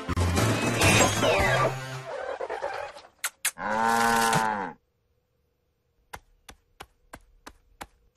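Cartoon soundtrack: background music that stops about two seconds in, then a short pitched sound effect lasting about a second, a moment of silence, and a run of six sharp clicks about three a second.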